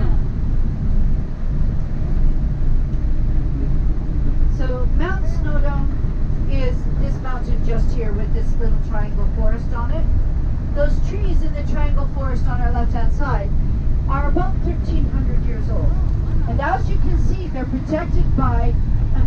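Steady low rumble of a moving tour coach's engine and road noise, heard from inside the passenger cabin. Voices talk over it from a few seconds in until near the end.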